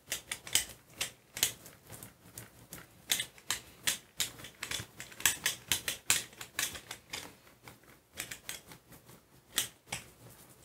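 A hand brayer rolled back and forth over a Gelli plate through tacky gold acrylic paint, making an irregular run of short, sharp crackles, several a second.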